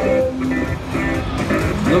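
An electric guitar and a bass guitar playing a song together live through amplifiers.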